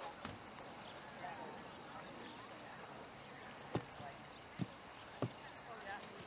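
Horse walking a trail course, its hooves striking wooden trail obstacles: three sharp knocks about a second apart in the second half, over faint voices in the background.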